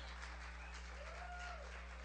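Faint room tone of a hall with a steady low electrical hum through the sound system, and a faint tone that rises and then falls, lasting about half a second, about a second in.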